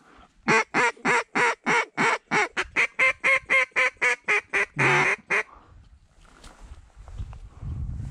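Duck call blown in a fast run of about twenty loud quacks, roughly four a second, with one longer quack near the end, stopping about five and a half seconds in.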